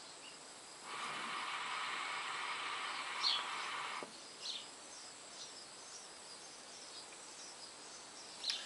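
Mini Mya hookah bubbling steadily as smoke is drawn through the water in its base, about three seconds of draw that stops abruptly. A few short bird chirps sound during and after it.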